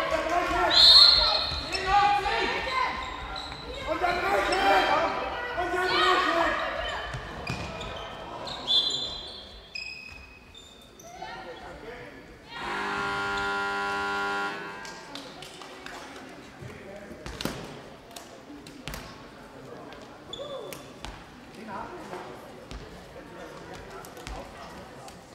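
A handball bouncing and players' feet on a sports-hall floor, with voices calling out, loudest in the first several seconds. About thirteen seconds in, a steady electronic buzzer sounds for about two seconds, signalling a stoppage in play. Scattered bounces and knocks follow.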